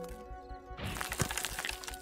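Cartoon soundtrack: soft music with held tones, joined about a second in by a dense crackling sound effect that lasts about a second.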